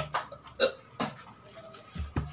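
A man hiccuping, about four short sharp hics in the first second or so, set off by the burn of the hot chili peppers he has just eaten.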